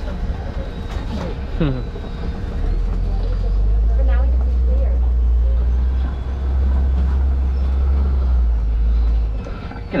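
Open-sided safari truck driving along, a steady low rumble that is heaviest from about three to nine seconds in.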